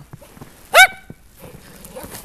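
Shetland sheepdog giving a single sharp, high bark a little under halfway through.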